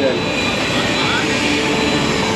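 Steady city street noise of passing motor traffic, with a thin steady high-pitched tone running through it.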